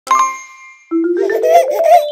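A bright bell-like chime strikes once and rings out for under a second, then a cheerful intro jingle starts with a run of notes stepping upward.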